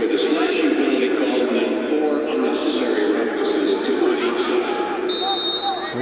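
A dense mass of crowd voices shouting and cheering in the stadium during the closing seconds of play. Near the end a referee's whistle blows for just under a second.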